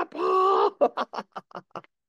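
A woman's drawn-out delighted exclamation, then a quick run of short laughs that fade out.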